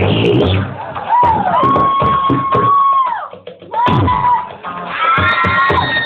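Live music from the Magic Pipe, a homemade steel-pipe instrument with a bass string, with its rhythmic beat running on. Over it come high, drawn-out whoops that rise and fall, with several at once near the end.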